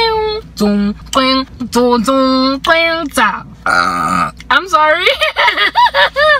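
A woman sings a few short held notes, then lets out one short burp about three and a half seconds in. Quick breathy laughing sounds follow.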